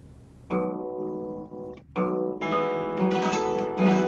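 Twelve-string acoustic guitar strummed: a chord rings out about half a second in and dies away, then further strums from about two seconds in keep the chords ringing.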